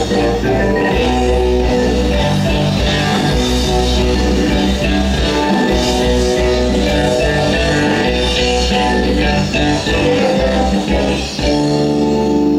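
Rock band playing a loud warm-up jam through an outdoor stage PA, with electric guitar and a drum kit, during a soundcheck.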